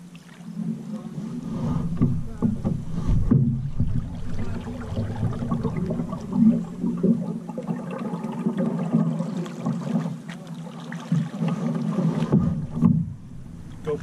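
Paddle strokes and water splashing and lapping along a wooden canoe's hull as it is paddled, uneven, with louder surges every few seconds.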